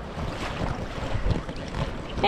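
Wind buffeting the camera microphone over water sloshing around a moving kayak's hull, an uneven, gusty rush without distinct splashes.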